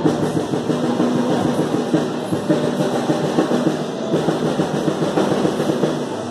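Acoustic drum kit played live in a dense, fast pattern of strokes over a recorded pop backing track.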